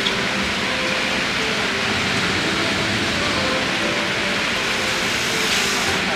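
A steady rushing noise at an even level throughout, with no distinct events.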